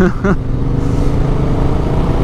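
Yamaha Ténéré 700's parallel-twin engine running steadily at cruising speed on a dirt road, with low wind rumble underneath.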